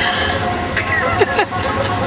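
A woman laughing inside a moving vehicle, over steady road and engine noise; the laughs come in several short sweeps of pitch in the middle of the stretch.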